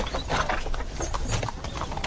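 Horses' hooves clip-clopping at a walk on hard, dusty ground, an uneven stream of many overlapping hoofbeats.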